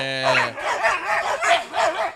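Rottweilers in a wire kennel barking in a quick run of short barks, about four a second, after a man's drawn-out "uh".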